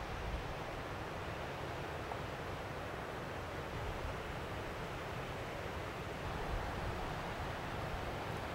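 Steady wind on the microphone, a soft even rushing with a low flutter.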